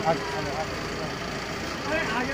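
A steady engine hum with a murmur of voices over it, a voice rising briefly near the end.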